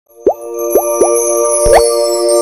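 Logo intro jingle: three quick rising plops over a held chord with high chimes, then a longer upward swoop near the end.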